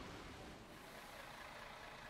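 Faint, steady outdoor street ambience: distant road traffic.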